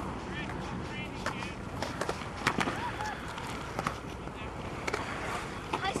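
Skateboard wheels rolling on concrete, with scattered sharp clacks from boards and faint distant voices.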